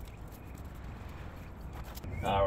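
Faint, even scrubbing of a cloth rag wiping an alloy wheel rim.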